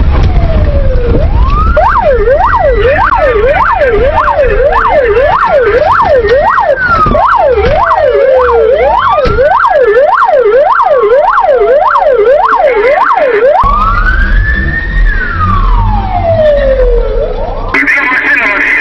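Police car siren in a slow rising and falling wail, switching about a second and a half in to a fast yelp of two to three sweeps a second, and going back to the slow wail near the end. Underneath is a steady low rumble of engine and road noise from the pursuing car.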